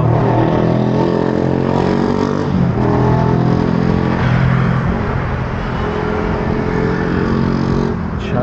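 Motor vehicle engine running close by on a city street, a loud steady hum over general traffic noise.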